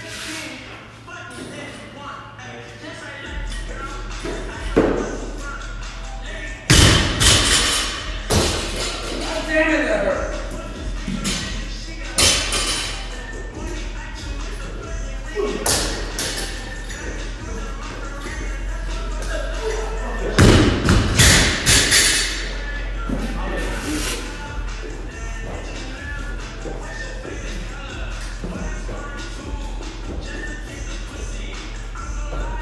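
Thuds on a gym floor from a barbell workout: a loaded barbell set down from overhead squats, and bodies dropping and jumping in bar-facing burpees, with music playing in the background. The loudest thuds come about seven seconds in and again about twenty seconds in.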